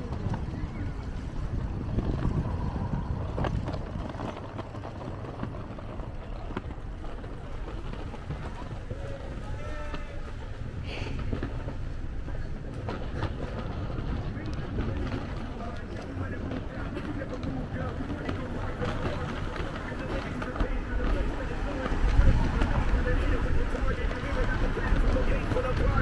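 City street ambience: scattered voices of passers-by over a steady wash of traffic and outdoor noise. A low rumble swells near the end as a car passes.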